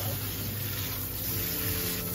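Salon shampoo-bowl shower head running, a steady spray of water falling into the bowl and onto the client's hair.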